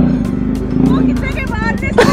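Motorcycle engine idling with a steady low rumble, with people talking over it near the end.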